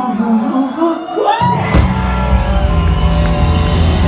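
Live rock band: a lone voice sings with a rising cry, then about a second and a half in the bass and drums come crashing in and the full band plays on loud.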